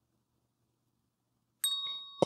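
A single chime struck once about one and a half seconds in. Its clear, high, bell-like tones keep ringing.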